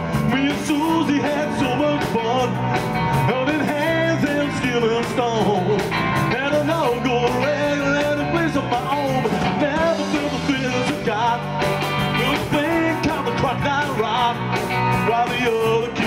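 Live rock and roll band playing: keyboard, electric guitar, bass guitar and drum kit over a steady beat.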